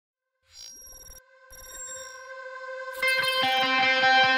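Opening of a heavy metal track: a held, ringing tone fades in after about half a second and slowly grows louder, then electric guitars come in about three seconds in with a fast, evenly picked run of notes.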